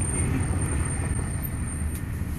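Steady low rumble of a car heard from inside its cabin, with no sudden sounds.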